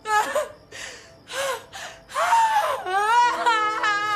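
A woman crying hysterically: short gasping sobs in the first two seconds, then a long wavering wail from about two seconds in.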